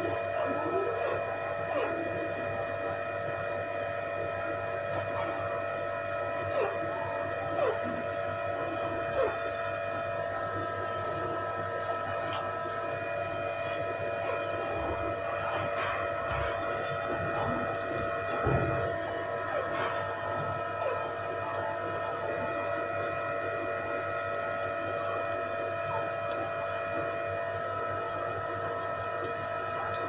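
A steady hum made of several unchanging tones, the sound of an electrical appliance or motor running. Faint short squeaks bend up and down over it, with a few light clicks.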